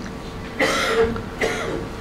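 A man clearing his throat with two coughs, a longer one about half a second in and a shorter one near the end.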